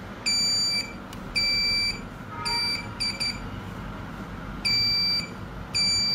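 Wireless alarm control panel beeping: a series of high beeps about half a second long, with a longer gap midway. It is the entry-delay warning after the doorbell zone is triggered while the system is armed, counting down before the panel goes into full alarm.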